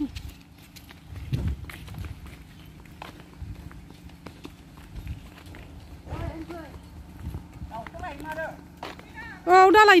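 Footsteps in sandals on a dry dirt track, with small scattered ticks and faint short wavering calls in the background. Near the end a loud wavering cry.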